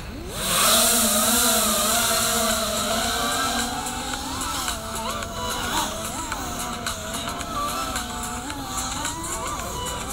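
FPV freestyle quadcopter's brushless motors on Gemfan VannyStyle 5136 props spooling up for takeoff about half a second in, then a high whine whose pitch rises and falls with the throttle, recorded from the onboard camera.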